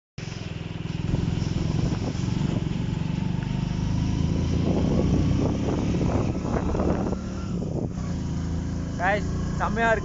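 A motor vehicle's engine running with a steady low rumble while riding along a road. Near the end a man's voice comes in.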